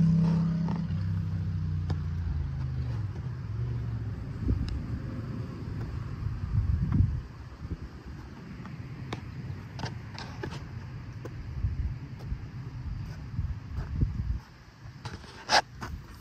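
A motor vehicle's low engine hum fading away over the first few seconds, followed by low rumbling and a few faint clicks.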